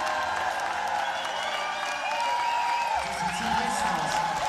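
Concert audience cheering and clapping, with shouting voices rising over the crowd noise. A low held musical tone comes in about three seconds in.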